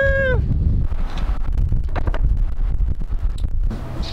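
Wind buffeting the microphone of a camera on a moving road bike: a loud, even low rumble. A high held tone, either a voice or a horn, ends about half a second in.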